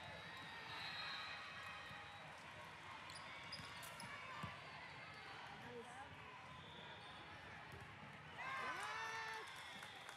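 Faint sound of an indoor volleyball rally in a gym: players calling out, with the ball being struck and hitting the court. Near the end several voices shout together.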